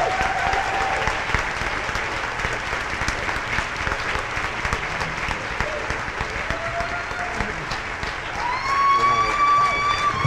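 Audience applauding steadily in a large hall, with a few long, high whoops from the crowd, the loudest near the end.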